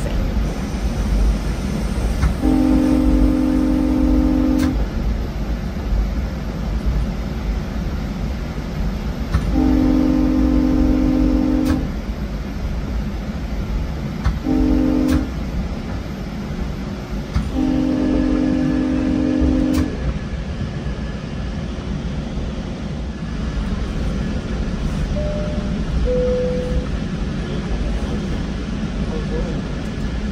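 GO Transit commuter train's horn sounding the grade-crossing signal, long, long, short, long, with each long blast lasting about two seconds. The pattern warns road traffic of the train approaching a level crossing. The steady rumble of the coach rolling on the rails runs underneath.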